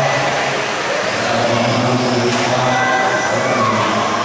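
Electric 1/12-scale RC on-road cars with 17.5-turn brushless motors running laps on an indoor carpet track. A thin motor whine rises and falls over a steady hall din.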